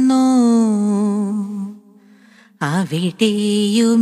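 A woman singing a slow Malayalam song in an ornamented, chant-like style. She holds one long note that fades away, there is a short pause, and then the melody comes back with sweeping pitch bends.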